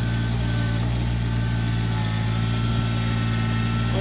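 Kubota compact tractor's diesel engine running at a steady, unchanging pitch as the tractor creeps across the ground.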